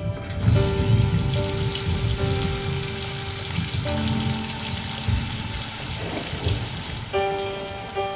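Heavy rain pouring, with soft held musical notes underneath. The rain drops away about seven seconds in and the music comes forward.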